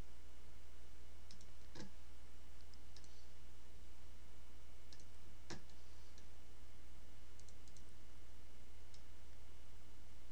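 Scattered clicks from a computer mouse and keyboard, two louder ones about two and five and a half seconds in and a quick run of faint ones near the end, over a steady low hum.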